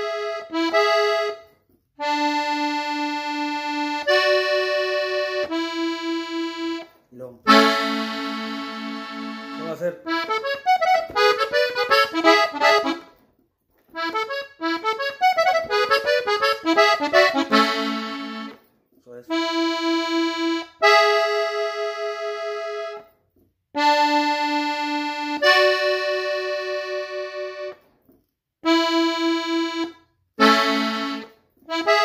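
Diatonic three-row button accordion tuned in E, playing in A major: short phrases of held chords and single notes separated by brief pauses, with two quick runs of ornamental notes in the middle.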